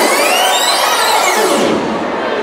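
Dance music backing track in a build-up: a rising synth and noise sweep over a thinned-out mix with the bass dropped out. The sweep fades near the end.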